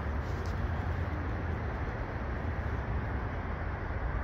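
Steady low outdoor background rumble of an urban roadside, with no distinct single sound standing out.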